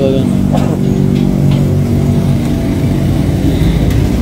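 Steady low engine and road rumble heard from inside a vehicle's cabin.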